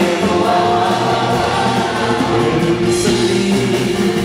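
A live rock 'n' roll band plays a song: a male lead voice with group backing harmonies over strummed acoustic guitar, electric guitar and electric bass, with a steady beat.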